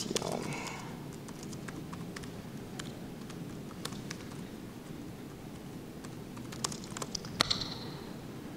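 Laptop keyboard typing: scattered key clicks over a steady low room noise, with a quicker run of keystrokes near the end.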